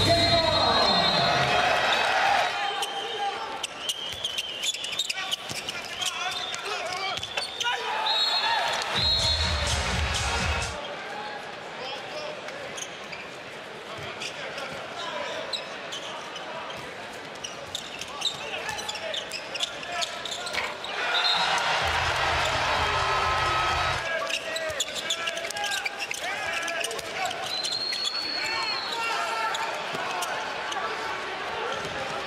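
Handball game sounds in an arena: the ball bouncing on the court, crowd and player voices, and three short referee whistle blasts, one at the start, one about eight seconds in and one near the end.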